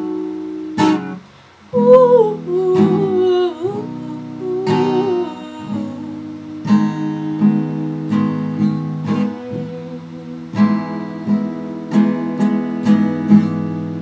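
Acoustic guitar playing the opening of a song: chords picked and strummed in a steady rhythm, with a short break about a second in.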